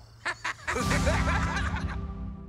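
Characters laughing briefly at a punchline, over a held music chord that comes in about a second in and sustains.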